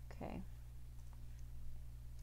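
A few faint, scattered single clicks from a computer mouse and keyboard.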